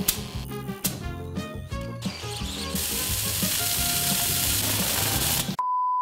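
A steady hiss from a butane-fired, water-cooled 3D-printed jet engine combustion chamber as it runs, starting about three seconds in, over background music. A few sharp clicks come in the first two seconds, and a one-tone bleep cuts in just before the end.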